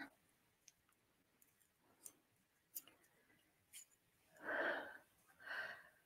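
Near silence with a few faint clicks, then two soft breaths or sighs from a person near the end.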